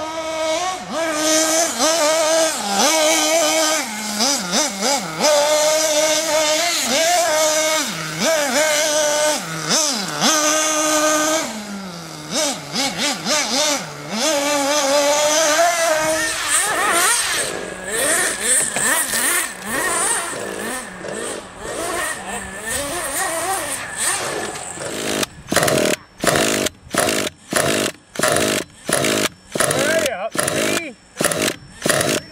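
Small nitro glow engines of RC buggies revving and buzzing at a high pitch, rising and falling with the throttle as the cars run. In the last few seconds come short on-off bursts about twice a second: a cordless drill spinning a nitro buggy's glow engine over to start it.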